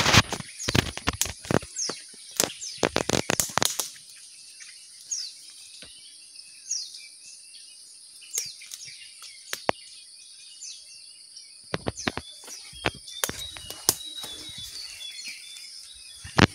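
Crackling and snapping of dry leaves, twigs and brush under footsteps moving through undergrowth, thick for the first few seconds and again near the end, quieter in between. Small birds chirp with short high calls throughout, over a steady high-pitched hum.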